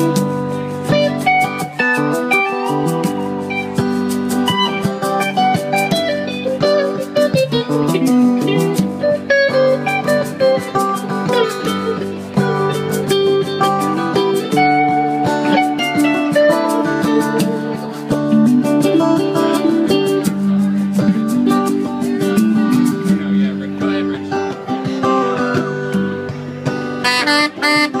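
Live band playing an instrumental break: an electric guitar lead with some bent notes, over strummed guitar and hand-drum percussion.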